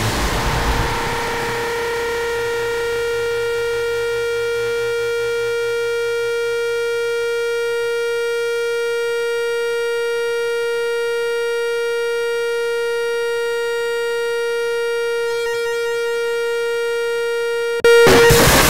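A single held tone at one steady pitch, part of a heavy music track, sustained for about seventeen seconds as the band's music drops away. Near the very end it cuts off abruptly and loud, dense music crashes back in.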